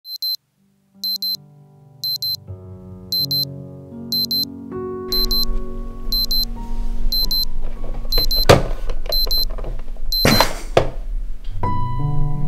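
A digital alarm clock beeps in quick, high double beeps about once a second. Under it, sustained music swells and builds. Two loud rushes of noise come near the end, and the beeping stops at the second of them.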